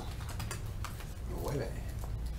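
Light clicking and crinkling of a clear plastic bag holding a wax pack of trading cards as it is handled, with a brief faint murmur about one and a half seconds in.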